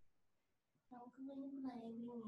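Near silence, then about a second in a person's voice starts: a drawn-out vocal sound held on a fairly steady pitch, with no clear words.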